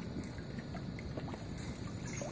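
Low, steady background rumble with a few faint, brief clicks.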